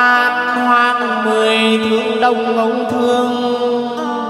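Chầu văn ritual singing: a singer holds one long, steady note over the band's accompaniment.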